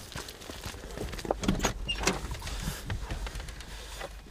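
Dry grass rustling and scraping against the camera and clothing, with irregular knocks and handling noise from people moving along a trench, over a low rumble.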